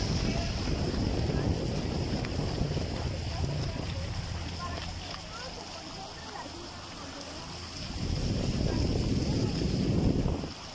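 A small boat's motor running under way, with wind buffeting the microphone. The sound eases off in the middle and grows loud again near the end.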